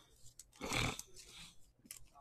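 A short, breathy sigh or exhale from a man, a little before the one-second mark. Faint clicks of trading cards being handled come before and after it.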